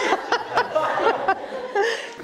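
Laughter: the bride laughing in short breathy bursts, with others chuckling.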